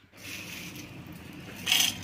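Small dried fish rustling and scraping against the inside of a stainless-steel mixer jar as the jar is handled, with a louder scrape near the end.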